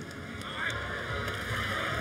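Outdoor football stadium ambience: a steady, low murmur of the crowd with no single sound standing out.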